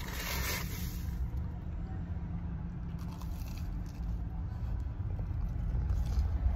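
Biting into and chewing a crisp fried churro: a short crisp crunch-like noise at the start, then faint crunching while chewing. Under it runs a steady low rumble inside a car.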